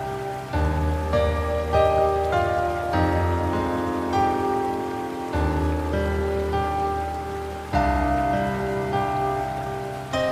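Slow, calm instrumental relaxation music of sustained chords, changing about every two and a half seconds, layered over a steady sound of rain.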